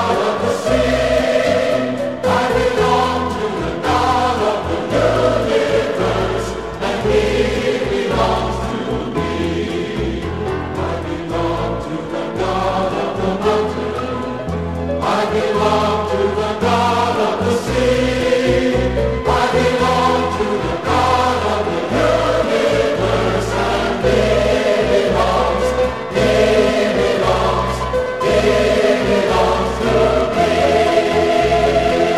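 Choir singing a gospel hymn with instrumental accompaniment, held notes over sustained bass notes that change every second or so.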